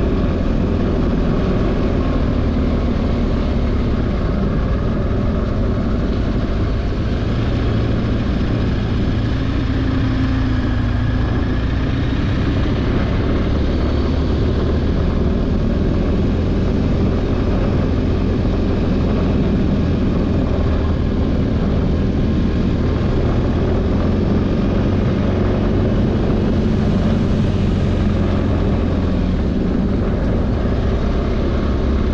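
Motorcycle engine running while riding, under a steady rush of wind noise; the engine note shifts a little now and then.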